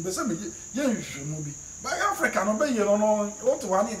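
A man talking, over a steady high-pitched tone that runs unbroken underneath.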